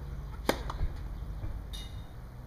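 Tennis racket striking the ball on a serve: one sharp crack about half a second in, followed by a fainter tick.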